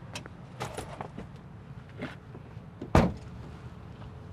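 Small rustles and knocks as a kit bag is set into a car trunk, then one solid thud about three seconds in as the Kia Optima's trunk lid is shut.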